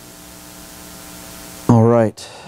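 Steady electrical mains hum with hiss, slowly growing louder. Near the end a man's voice abruptly starts, much louder than the hum.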